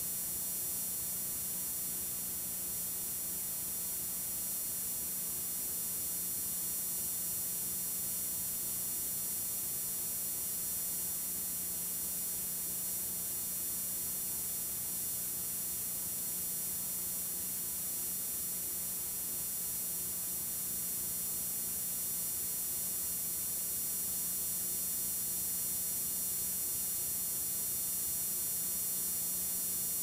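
Steady electrical hum with faint hiss from a videotape player running over blank tape after the recording has ended, unchanging throughout.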